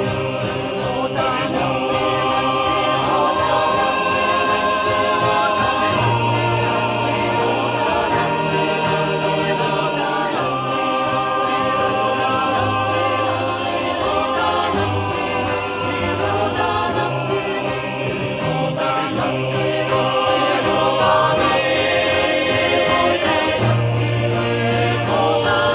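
Mixed choir of men's and women's voices singing a slow song in held chords over a steady low bass line, accompanied by acoustic guitars.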